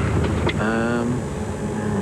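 Car running, heard from inside the cabin: a steady low engine and road rumble. A short voice-like tone sounds about half a second in.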